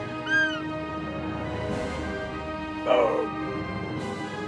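Two short roe deer calls over background music: a high, arched peep about a third of a second in, then a louder, lower call falling in pitch about three seconds in.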